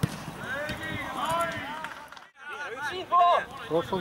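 Men's voices talking close to the microphone, with a brief dropout just past halfway where the recording cuts.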